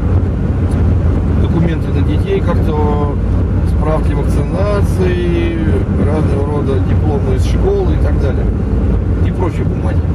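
Steady low drone of road and engine noise inside a car's cabin at highway speed.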